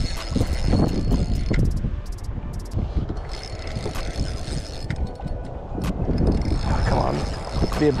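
Spinning reel being cranked, giving a mechanical ticking, while a hooked fish is played on a bent rod. Under it runs a steady low rumble.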